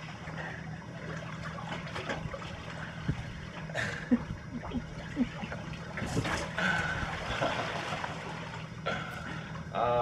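Gentle sea water lapping and washing on a pebble shore, over a steady low hum, with a few light clicks and a brief swell of louder noise about six seconds in.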